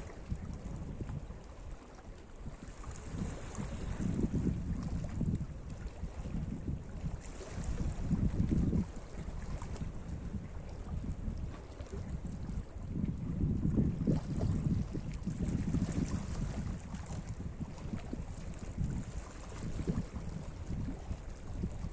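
Small Mediterranean waves washing over flat shoreline rocks, rising and falling in swells every few seconds, with wind rumbling on the microphone.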